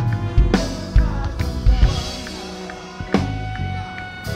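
Live band with a drum kit: the drummer plays a sparse run of accented kick, snare and cymbal hits over sustained chords, with several hits in the first two seconds and another strong one about three seconds in.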